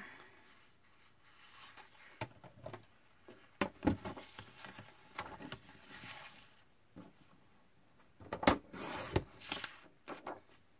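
Paper and cardstock being shuffled and slid across a tabletop while a small paper trimmer is handled, with several sharp taps and knocks, the loudest about eight and a half seconds in.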